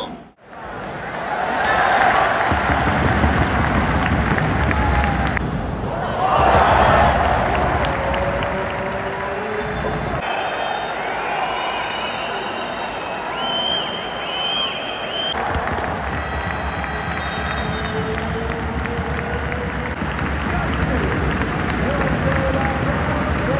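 Basketball arena crowd cheering and clapping, loud and continuous, with a few abrupt jumps in the sound where short clips are cut together.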